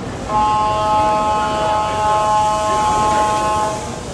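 A train's horn sounding one steady, unwavering tone, held for about three and a half seconds and cut off sharply near the end.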